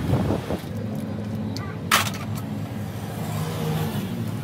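An engine idling steadily with a low hum, and a single sharp click about halfway through.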